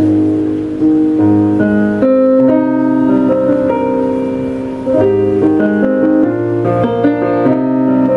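Solo piano played on a keyboard: held chords changing about every second or so over low bass notes, with no singing.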